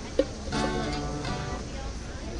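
Acoustic guitar strummed once about half a second in, the chord ringing for about a second before fading. Just before it come two sharp knocks, the second the loudest sound here.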